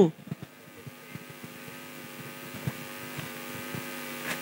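Steady electrical hum from the public-address sound system, a stack of even tones growing slowly louder, with a few faint clicks.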